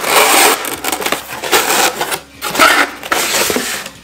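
Corrugated cardboard box being opened by hand: flaps and a cardboard insert scraping and rubbing against each other in several short bursts, with a brief pause about halfway through.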